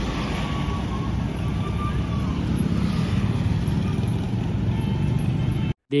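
Steady road-traffic noise from cars and trucks passing on a highway, a low rumble of engines and tyres. It cuts off suddenly just before the end.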